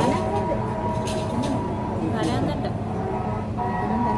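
Restaurant room background: indistinct voices chattering over a steady hum, with a few light clicks of dishes.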